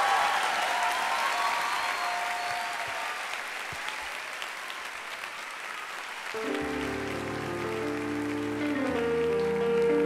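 Audience applauding at the end of a song while the orchestra's final held notes fade out over the first few seconds. About six and a half seconds in, sustained instrumental chords start up under the applause.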